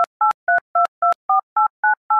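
Touch-tone phone keypad dialing a number: a quick, even run of about eight short two-note beeps, roughly four a second, with the pitch pair changing from key to key.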